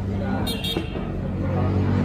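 Road traffic with an engine's steady low hum, and voices in the background. Two brief sharp sounds come about half a second in.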